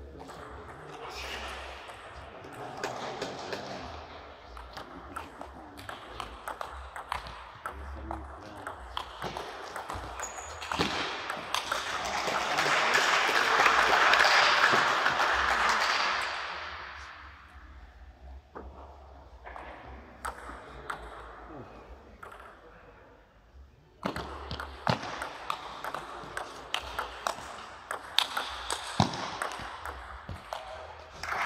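Table tennis ball clicking off bats and table, sparse at first and then a fast rally near the end. A loud swell of even noise builds and fades in the middle.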